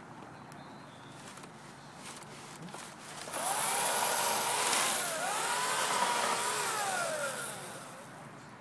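A Christmas tree being pushed through a metal funnel tree netter, its branches scraping and squealing against the cone as the netting wraps it. The sound starts a little over three seconds in, with squeals that rise and fall in pitch, and dies down near the end.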